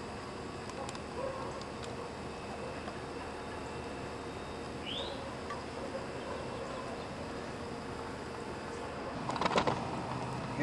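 Quiet outdoor background ambience: a steady hiss with a faint hum, one short rising chirp about halfway through, and a brief clatter of knocks near the end.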